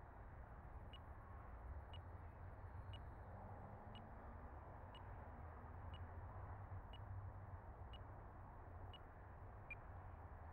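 Near silence with a faint low rumble, broken by a short, high electronic beep about once a second, nine beeps in all.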